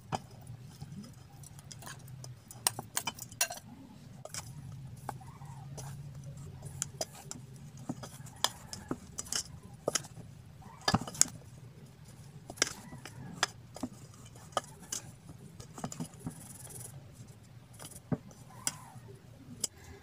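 Hands tossing small anchovies through flour in a stainless steel mixing bowl, with scattered light clicks and taps of fish, fingers and bowl rim against the metal.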